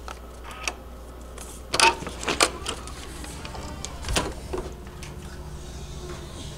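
Hotel room door's electronic keycard lock and handle being worked: a few sharp clicks and knocks, loudest about two seconds in and again about four seconds in.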